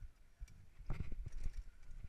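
Mountain bike clattering over a bumpy dirt trail: a run of sharp knocks and rattles about a second in, over a low rumble of tyres and wind on a helmet-mounted camera.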